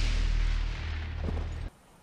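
A film soundtrack's deep boom: a loud, rushing blast with heavy rumble underneath, fading, then cut off abruptly near the end.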